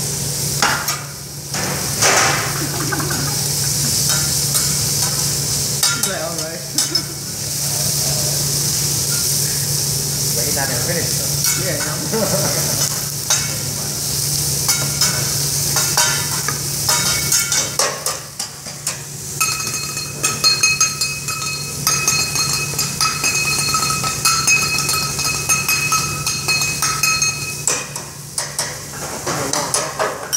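Meat, shrimp and vegetables sizzling on a teppanyaki flat-top griddle, with metal spatulas clicking and scraping on the steel. In the second half a steady high ringing tone sounds for about eight seconds.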